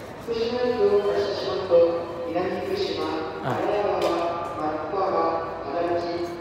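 An indistinct voice over background music, with the general sound of a busy train-station concourse.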